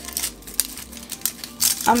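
Dry red-onion skin crackling as it is peeled away with a small knife: a few short, papery crinkles.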